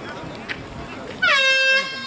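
Air horn sounding one short, loud blast of about half a second, dipping slightly in pitch at its start and cutting off sharply. It is the match hooter, signalling that time is up in the half.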